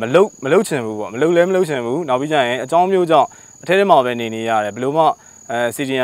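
A man talking steadily in Burmese, with a constant high-pitched insect trill behind his voice.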